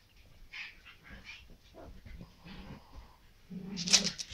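A sleeping pug breathing noisily through its short nose in short, irregular sounds, with a louder burst near the end.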